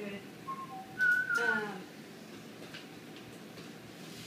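A person whistling a few short notes: two soft ones, then a louder high note about a second in, followed by a short falling vocal sound.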